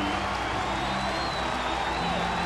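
Ballpark crowd cheering and applauding a home-team home run as the hitter rounds the bases, with stadium music playing over the public address.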